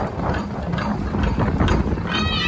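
Rapid, rattling drumming of Khasi dance music over the loudspeakers, with no pipe melody playing.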